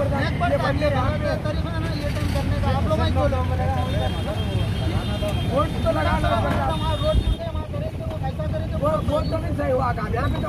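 Men's voices talking over a steady low rumble of road traffic.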